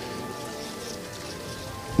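A steady, even hiss with faint held tones of quiet background music beneath it.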